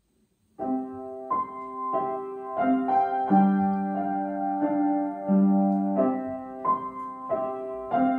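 Upright piano starting to play about half a second in, a slow melody of struck notes over chords.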